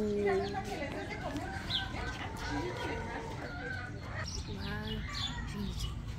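Barnyard chickens clucking and calling in many short calls throughout, with indistinct people's voices underneath.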